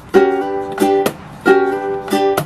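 Kala curly-mango tenor ukulele played with a slide strum: chords slid up a fret into place, a thumb upstroke, then a percussive slap on the strings. The pattern repeats twice.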